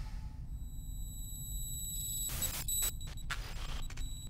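A low steady drone of sci-fi film score, joined about half a second in by thin, high, steady electronic tones, with a few short bursts of noise in the second half.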